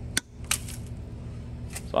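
Diagonal cutters snipping at the rubber sheath of an electrical cord to nick it open: two sharp clicks in the first half-second and a fainter one near the end, over a steady low hum.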